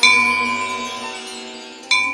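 Music with two struck bell-like chimes: the first rings out and fades slowly, and a second strike comes just before the end.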